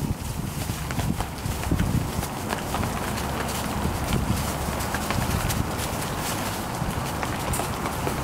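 Vizsla puppies scampering and scuffling through wood-shavings bedding: a busy rustle and crunch of shavings with many quick, light paw patters over a steady low rumble.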